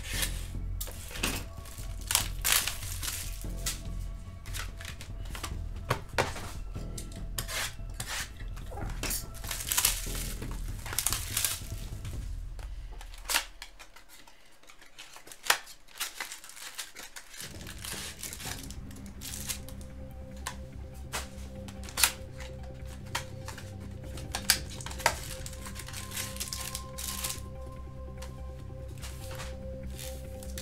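Background music runs under repeated clicks, taps and rustles of cardboard trading-card boxes and clear plastic packaging being opened and handled. The music's bass drops out for a few seconds about halfway, then returns.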